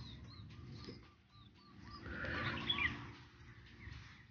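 Faint chirping of small birds in quick short arched notes, densest in the first second, over a low steady rumble. A louder noisy patch about two to three seconds in.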